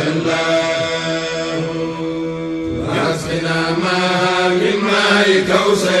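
Voices chanting an Arabic devotional poem, a Senegalese Mouride khassida, drawing out one long melismatic passage between lines of verse.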